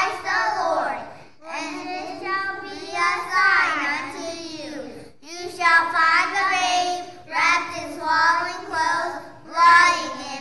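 Young children singing together, a song in held phrases with short breaks about a second in and about five seconds in.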